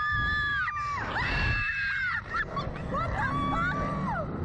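Two women screaming on a Slingshot reverse-bungee ride: a run of long, high, held screams, often overlapping, each dropping in pitch as it ends. A steady low rumble of wind on the microphone runs underneath.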